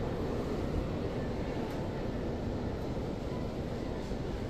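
Steady low rumble of heavy rain pouring down on the building's roof, heard from inside.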